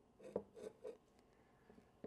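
Faint wooden taps and rubbing from a pine Langstroth beehive frame being turned around and set down on a tabletop. There are a few light knocks in the first second, then near silence.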